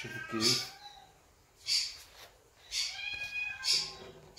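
A domestic cat meowing twice, briefly, the calls bending in pitch. Short hissing sounds come in between the meows.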